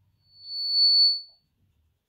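Chalk squeaking on a blackboard: one high, steady squeal of about a second that swells up and fades away.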